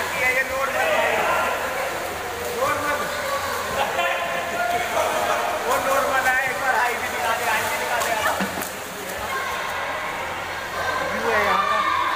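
Indoor swimming pool: several voices calling and chattering over a steady hiss of water.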